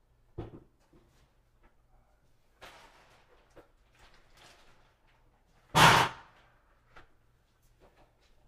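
Scattered light knocks and soft rustling from materials being handled on a workbench, with one loud thud or slam about six seconds in.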